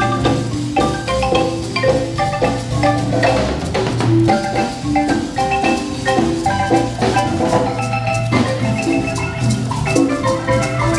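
Guatemalan marimba music: quick runs of short struck notes over a continuous low bass.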